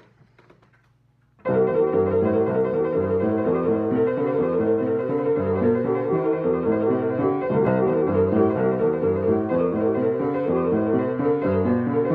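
Grand piano played: after about a second and a half of near quiet, a busy rhythmic piece starts abruptly and runs on, with one middle note struck over and over.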